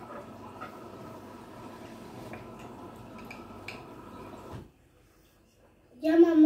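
Instant shrimp noodles being lifted out of broth with a metal fork and spoon: faint wet sounds of noodles and dripping soup, with a few light clicks of the utensils. The sound drops away about four and a half seconds in.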